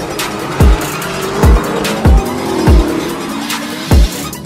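Trailer music with five deep bass hits that drop sharply in pitch, mixed with a car's engine revving and its tyres squealing in a burnout.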